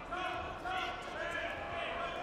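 People shouting across a large hall, in short calls that rise and fall in pitch, with dull thumps of the wrestlers' bodies on the mat.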